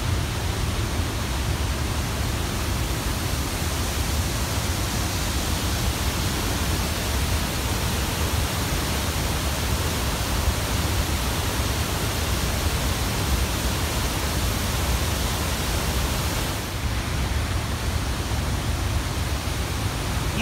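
Waterfall in heavy flow: a steady, unbroken rush of falling water, dropping slightly in its upper range about three seconds before the end.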